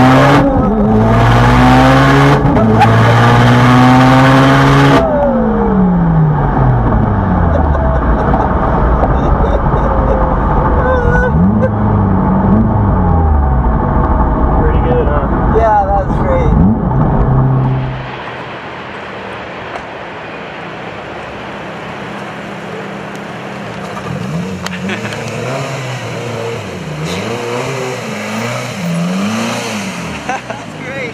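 The 900 hp turbocharged engine of a Mitsubishi Lancer Evolution, heard from inside the cabin, pulling hard at full throttle with two quick upshifts. About five seconds in the driver lifts off and the revs fall away. The engine then runs at varying lower revs until, about eighteen seconds in, the sound turns much quieter.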